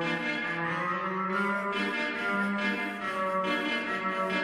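Music: the opening of a K-pop hip-hop track, with held melodic notes and echo effects added.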